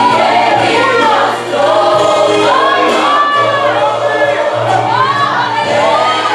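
A man singing a Portuguese gospel worship song into a microphone in long, swelling phrases, over steady low backing notes.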